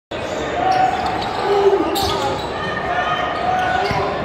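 A basketball being dribbled on a hardwood gym floor, among unclear voices from players and spectators, echoing in a large gymnasium.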